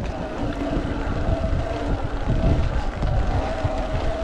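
Wind buffeting the action camera's microphone and tyres rolling on gravel as a Rocky Mountain Altitude Powerplay e-mountain bike is ridden, with a faint steady whine from its Powerplay mid-drive motor under assist.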